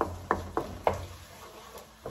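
Wooden spoon stirring tomato sauce in a wok, knocking against the pan: four quick knocks in the first second, then quieter stirring.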